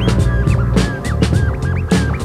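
Record scratching on a turntable, cut over an electronic hip-hop beat with heavy bass and drums. The scratches are short rising and falling sweeps, a few each second. The turntable plays Ms. Pinky timecode vinyl that drives the sound through Ableton Live.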